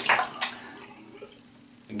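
Bathroom sink tap running, then shut off with a sharp click about half a second in.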